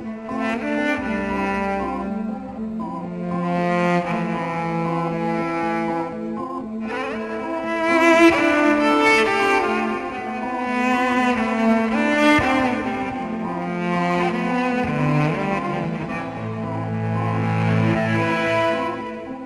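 Solo electric cello, bowed, playing slow sustained notes with several pitches sounding together. It grows fuller and busier, with more notes overlapping, from about seven seconds in.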